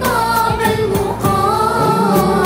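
Children's choir singing with instrumental accompaniment and a steady beat.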